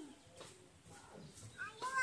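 Short, high-pitched vocal calls that arch up and down in pitch, starting about one and a half seconds in and getting louder; the stretch before them is quieter.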